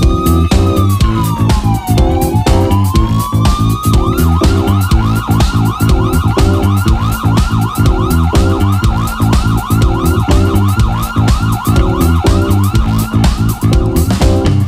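Live funk-soul band playing an instrumental groove: drums and bass guitar keep a steady beat while a siren-like lead sound glides down and back up, then warbles rapidly for the rest of the passage.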